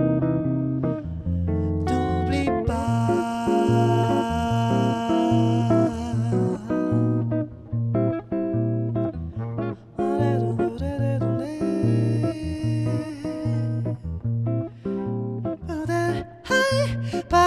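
Archtop electric jazz guitar playing an instrumental break of a bossa-style song, with chords and single notes over a pulsing bass line.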